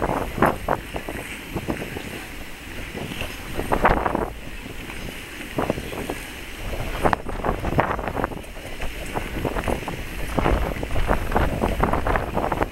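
Wind rumbling on the microphone over the ambience of a busy outdoor ice rink, with irregular short scrapes and clacks from skaters on the ice.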